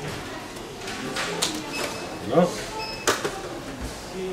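Card and plastic packaging being opened by hand: rustling, with sharp crackles about a second in and again about three seconds in.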